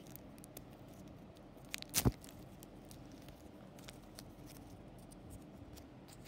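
Faint rustling and light clicks from fingers unfolding a small paper sticker sheet, with one soft thump about two seconds in.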